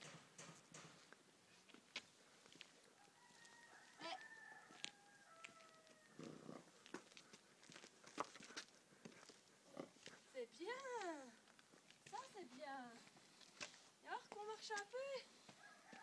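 Horse's hooves clicking on hard ground, quickly in the first second and then now and then. Later come several faint, drawn-out vocal calls whose pitch slides up and down.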